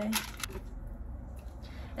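Plastic açaí smoothie packet handled in the hands, a couple of short crinkles in the first half second, then faint handling noise.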